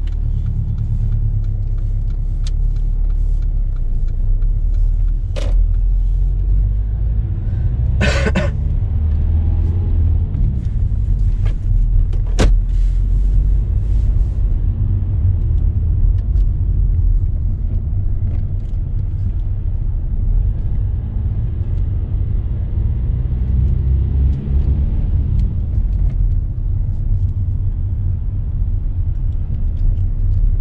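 Steady low rumble of a car's engine and tyres heard from inside the cabin while driving. A few faint clicks, and a short louder noise about eight seconds in.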